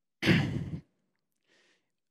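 A man's short, audible sigh, followed about a second later by a faint in-breath.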